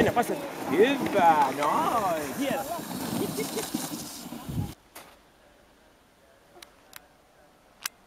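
Sled huskies yelping and howling in excitement as the team is about to run, with wavering, quickly bending cries. About four and a half seconds in, the sound cuts off abruptly to near quiet, broken by a few faint clicks.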